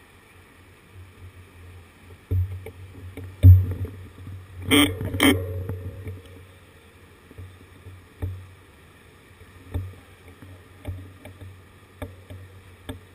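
A person coughs twice in quick succession, about five seconds in, over a low, steady street rumble. A couple of sharp thumps come just before the coughs, and small knocks and clicks are scattered through the rest.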